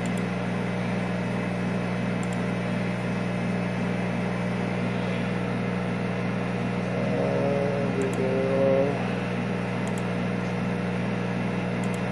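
Steady electrical hum of running workshop equipment, the laser cutter setup's fans or pump, with a few faint clicks as the control software is worked with the mouse. A short wavering tone rises over the hum about two-thirds of the way through.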